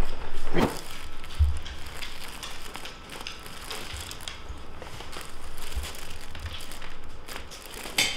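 Rustling and crinkling with scattered small clicks and a soft low thump about a second and a half in: a patient shifting face down on a chiropractic table, against its paper headrest cover.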